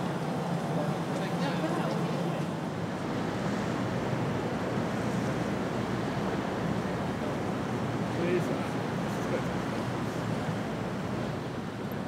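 Steady outdoor background noise beside a river: an even hiss of wind and water, with faint snatches of passers-by's voices, one a little louder about eight seconds in.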